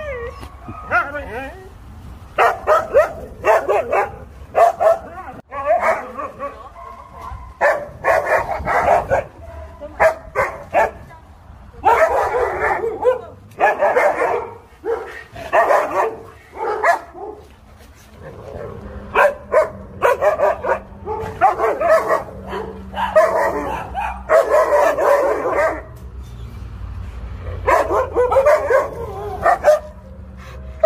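A husky 'talking': a long run of drawn-out, speech-like vocal calls mixed with yips and whines, in bursts of a second or two with short pauses between.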